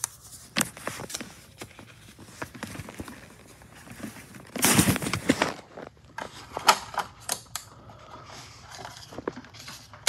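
Clicks, knocks and rustling from handling a DVD and loading it into a disc player. A louder rustle comes about halfway through, followed by a quick run of sharp clicks.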